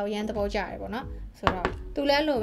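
A single sharp knock about one and a half seconds in, the loudest sound here, from a glass cream jar being set down on a hard surface. Background music with a voice and a steady beat runs underneath.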